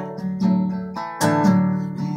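Acoustic guitar strummed, its chord ringing between strokes, with two strong strums: one about half a second in and a harder one just past the halfway mark.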